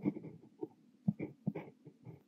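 Kaweco Liliput brass fountain pen with an extra-fine steel nib writing on notebook paper: short, irregular scratches of the nib, several a second, as Korean characters are formed stroke by stroke.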